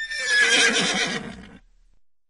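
A horse whinnying: one high, wavering call that trails off over about a second and a half.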